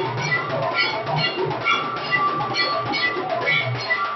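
Temple aarti music: drums beaten in a steady rhythm, with metallic bell-like tones ringing on the beats.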